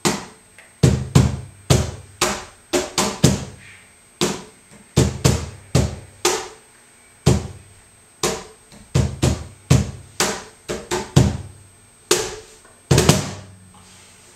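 Cajon played by hand in a slow tientos rhythm: deep bass hits mixed with sharper slap tones, some strokes falling in quick two- and three-stroke pickups. Near the end it closes with a quick cluster of strokes, a cut (remate) at the end of the compás.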